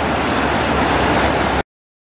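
A river running over rocks in shallow rapids, a steady rush of water close to the microphone that cuts off suddenly about one and a half seconds in.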